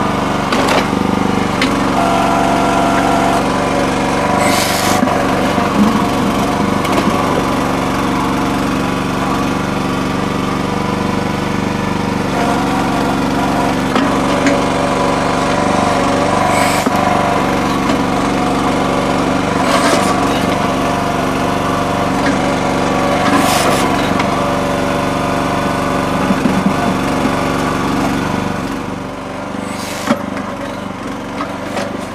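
Red Rock mini towable backhoe's small engine running steadily under load, driving the hydraulics while the bucket digs through mud and rocks. A few short hisses stand out over the engine, several seconds apart.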